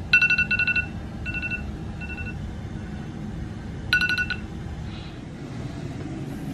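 Smartphone alarm going off: clusters of rapid, two-pitch electronic beeps, louder at the start and again about four seconds in, with softer clusters between, then it stops. A low steady hum sits underneath.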